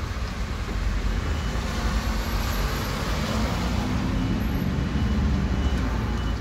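Solaris Urbino city bus running as it moves off slowly and turns: a steady low engine rumble whose note strengthens and climbs a little a few seconds in.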